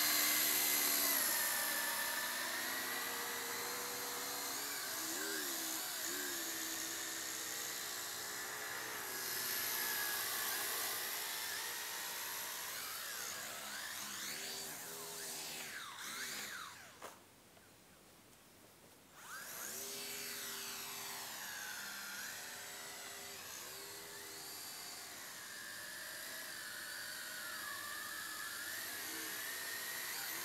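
Small toy quadcopter's electric motors and propellers whining, the pitch rising and falling as the throttle is worked. The motors stop for about two seconds a little past the middle, then spin up again.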